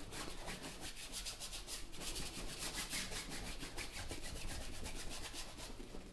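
Paintbrush scrubbing acrylic paint onto a canvas in rapid back-and-forth strokes, a dry scratchy rubbing, as a background layer is worked in.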